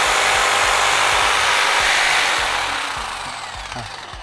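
A Bosch 400 W reciprocating saw running with no load. About two seconds in it is switched off, and the motor winds down with a falling whine that fades by the end.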